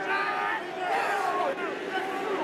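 Men's voices shouting calls on the pitch as a rugby scrum engages and pushes, over stadium crowd noise.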